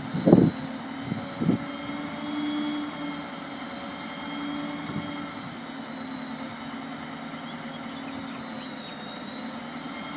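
Truck engine running with the steady whine of the Succi-Lift SR5 hooklift's hydraulic pump as the container is lowered onto the frame. A few brief louder knocks come in the first second and a half.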